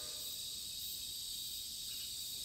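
Faint steady background hiss with thin, high, unchanging tones.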